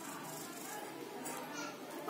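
Faint, distant voices over low background noise.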